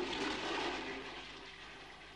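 A rushing, hissing noise like running water, swelling about half a second in and fading away over the next second.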